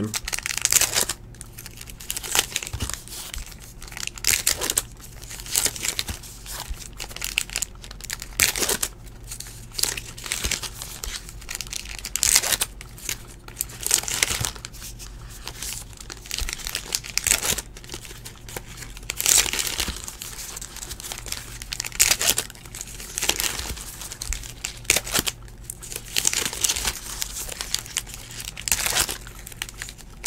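Trading-card pack wrappers being torn open and crinkled in repeated irregular bursts, with cards handled between them.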